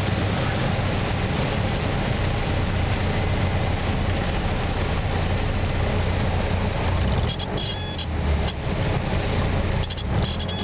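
Light single-engine aircraft's piston engine and propeller running with a steady low drone and wind rush in the cabin during the landing flare. Short high-pitched tones sound about seven seconds in and again at the very end.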